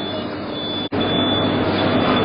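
Remote-controlled tracked mini ground robot's electric drive giving a high whine that switches on and off, over a steady noisy background hum. The sound breaks off for an instant about halfway through.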